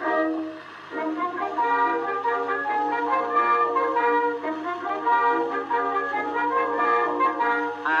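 Instrumental break of a 1913 acoustic-era popular song recording: a small orchestra with brass and clarinet playing the tune between the vocal choruses, resuming after a brief dip about a second in. A steady low hum runs underneath.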